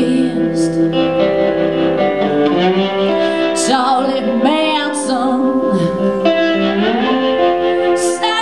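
Live blues-rock song: a woman singing long held, wavering notes over electric guitar accompaniment.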